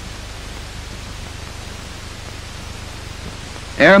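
Steady hiss with a low hum underneath, the background noise of an old film soundtrack; a man's narrating voice starts near the end.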